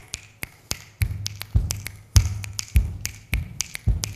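A performer's body-percussion beat: sharp finger-snap clicks, joined about a second in by a steady low thump roughly every 0.6 s.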